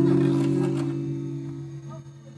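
Acoustic guitar chord ringing out after being strummed, slowly fading away.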